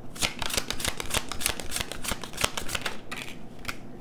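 Tarot deck being shuffled by hand: a dense run of quick card flicks that thins out to a few separate ticks near the end.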